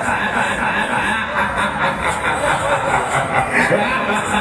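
Fairground ride's loudspeakers playing loud music, with an amplified announcer's voice over it.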